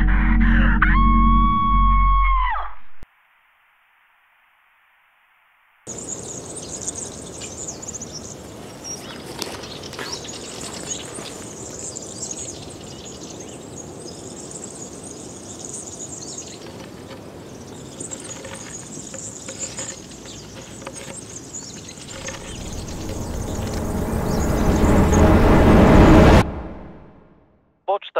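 A long electronic voicemail beep, one steady tone over a low drone, then about three seconds of silence. From about six seconds in, pine-forest ambience with birds chirping over a steady high hiss; over the last few seconds a low swell rises to the loudest point and cuts off suddenly.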